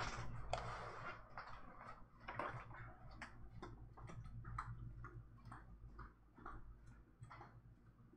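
Footsteps walking away from the microphone: irregular knocks about two a second that grow steadily fainter, after a short rustle at the start.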